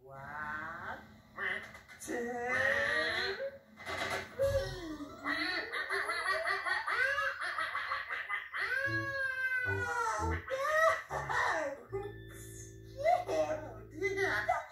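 Puppet characters' high, gliding nonsense babble mixed with a children's TV programme's music, heard through a television speaker, ending on a held low chord.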